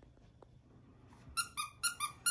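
Three quick, high-pitched squeaks from a squeaky dog toy in the second half.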